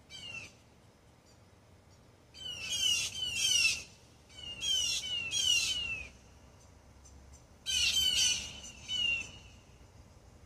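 Blue jays giving harsh, falling alarm calls in quick runs of three or four, with short gaps between the runs. This is their alert at a hawk nearby.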